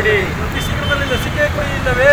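A few people's voices, not clearly words, over a steady low rumble of road traffic.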